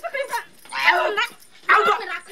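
A woman's two short, loud yelping cries, uttered as she is grabbed and pulled in a scuffle.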